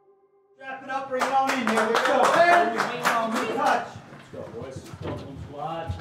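Several men shouting together with sharp hand claps, starting suddenly about half a second in and loudest over the next few seconds, then dropping to quieter talk.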